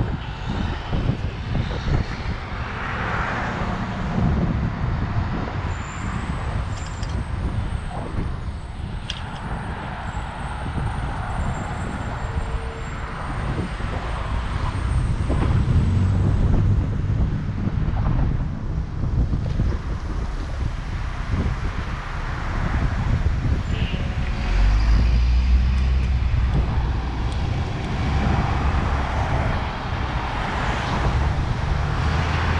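Road traffic passing on a city street, under a heavy low rumble of wind on the microphone of the moving camera. The rumble grows loudest for a few seconds near the end.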